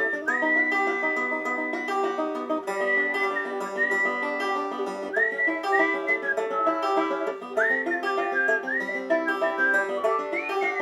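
Banjo picking the chords of an instrumental solo, with a whistled melody over it that slides up into long held notes, the longest held about two seconds near the start.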